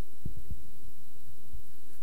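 A steady low hum, with two soft low thumps about a quarter and half a second in.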